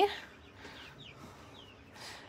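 Faint, short peeps from a Coturnix quail: three quick high chirps, each sliding downward in pitch.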